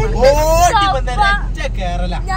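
A person talking over the steady low rumble of a moving vehicle.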